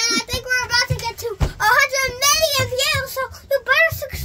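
A young boy's high-pitched voice making drawn-out, wavering vocal sounds without recognisable words.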